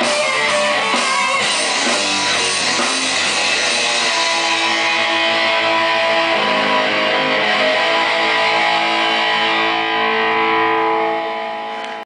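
Two Telecaster-style electric guitars played through an amplifier: strummed chords at first, then a final chord left ringing for several seconds before fading near the end.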